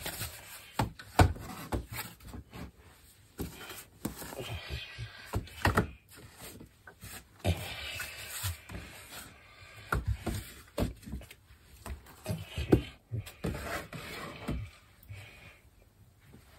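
Handling noise as small painted canvases are put away: irregular light knocks and thuds with rustling, and a blanket being moved near the end.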